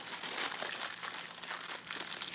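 Foil wrapper crinkling as hands fold it around a solid chocolate egg: a continuous run of fine crackles, densest about half a second in.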